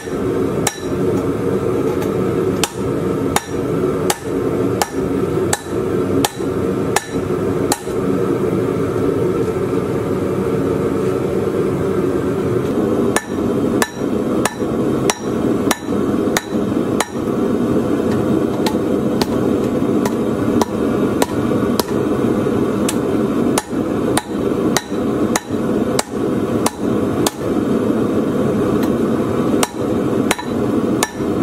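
Hand hammer striking red-hot steel on an anvil, one to two blows a second, with a pause of a few seconds about a third of the way in. A steady rushing noise runs underneath.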